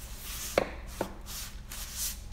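Hardcover books sliding and rubbing against their neighbours as they are tilted and pulled out of a tightly packed wooden bookshelf, with two light knocks about half a second and a second in.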